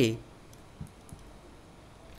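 A few faint, light clicks of a stylus pen tapping on a writing tablet during handwriting, just after the end of a man's spoken word.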